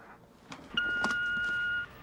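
Voicemail system beep: a faint click, then one steady tone of about a second that cuts off sharply, marking the start of the next recorded phone message.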